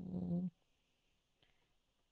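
A person's brief hummed filler sound, a steady 'mm' about half a second long at the start, then near silence.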